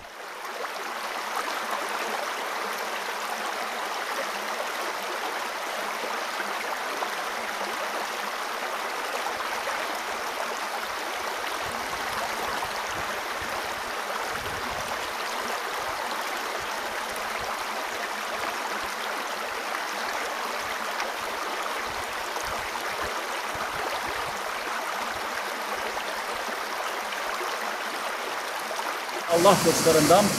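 Steady, unbroken rush of water pouring over a waterfall, an even hiss with no change in level.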